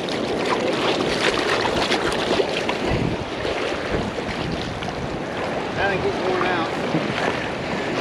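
Shallow surf washing and swirling around wading feet at the water's edge, with wind buffeting the microphone, most strongly about three and four seconds in.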